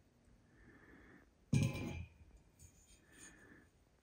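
Quiet room with faint breathing near the microphone, and one short, louder noise about a second and a half in.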